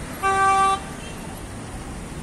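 A car horn gives one short, steady honk of about half a second, a quarter of a second in, over steady street traffic noise.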